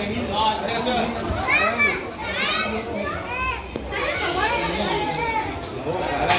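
Children's voices chattering and calling out, with a run of high-pitched shouts in the middle.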